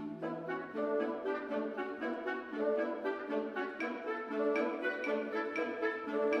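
Classical orchestral music with horn and woodwinds, moving in a quick, even pulse of short notes.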